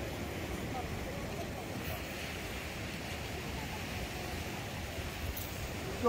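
Steady rush of surf and wind on the beach, with faint voices in the background.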